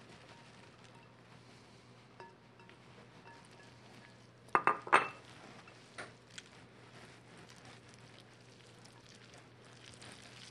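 Linguine, peas and ricotta being tossed with a wooden spoon in a large ceramic mixing bowl, mostly quiet, with two sharp clinks of kitchenware about four and a half seconds in and a couple of lighter taps a second later.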